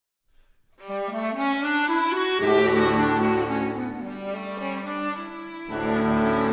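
Small chamber ensemble of violin, viola, cello, clarinet and trombone playing modern-classical music. Held notes begin about a second in and step upward, a low note joins a little after two seconds, and a new low chord comes in near the end.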